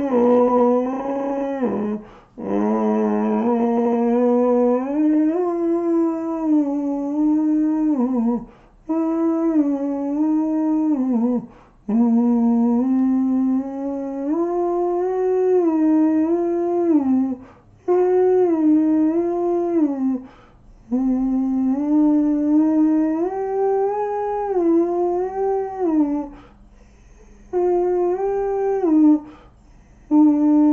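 A man singing a slow wordless melody on an open vowel, holding each note for a few seconds and stepping from pitch to pitch, with brief pauses between phrases.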